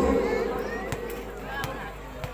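A male commentator's drawn-out call of a name, held on one pitch and ending about half a second in. It gives way to steady crowd noise with a couple of sharp knocks.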